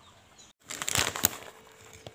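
Newspaper rustling and crackling for about a second, as it is handled under a pile of bird's eye chillies, with two sharper cracks, the second the loudest.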